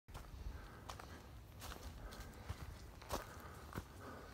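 Footsteps on grass and leaf litter, about one step every three-quarters of a second, over a low rumble.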